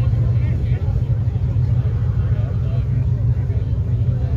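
Drag-racing cars' engines idling at the starting line, a steady deep rumble that holds without revving up or launching.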